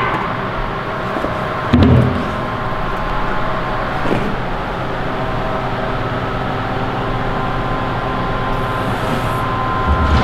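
Steady hum of a sheet-metal folding machine running while a steel strip is bent on it, with a short metal clunk nearly two seconds in.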